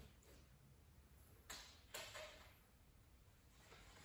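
Near silence: room tone, with two faint, brief swishes of movement about one and a half and two seconds in.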